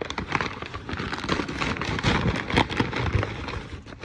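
Crumpled brown kraft packing paper crinkling and rustling continuously as a hand pushes through it inside a cardboard box.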